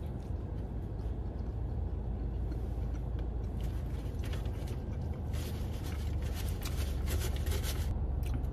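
A man chewing a big mouthful of burger, faint soft mouth ticks, over a steady low rumble in a car cabin.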